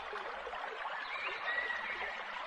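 Steady rush of running water, with a few faint thin whistles that may be birds, about a second in and near the end.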